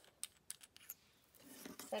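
A few faint, quick plastic clicks and scrapes in the first second as the We R Memory Keepers Foil Quill pen's adapter is unscrewed by hand.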